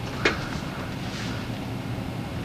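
Steady low background hum with a faint hiss, broken by a single sharp click about a quarter second in.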